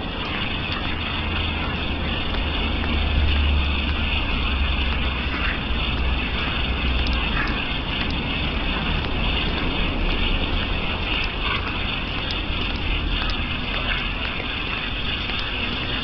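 Steady outdoor street noise picked up by a walking, handheld camera: a continuous rumble and hiss with no single clear source, the low rumble swelling a few seconds in.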